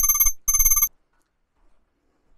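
A trilling electronic ring, like a telephone ringtone, in two short bursts that stop just under a second in, followed by near silence.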